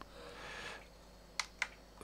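Two quick clicks, about a quarter second apart and about a second and a half in, from the side push buttons of a Lilliput 7-inch LCD monitor being pressed to bring up its picture menu. A faint short hiss comes before them.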